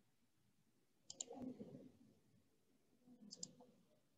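Near silence broken by two brief faint bursts of clicking, one a little after a second in and one a little after three seconds, each a pair of sharp clicks with a soft rustle under it.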